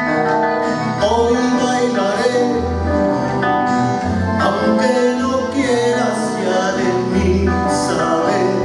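Live acoustic band music: guitars and an accordion playing a song.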